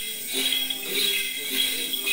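A shaken cluster of small metal bells, the xóc nhạc of Then ritual, jingling steadily, with a voice singing held Then notes over it.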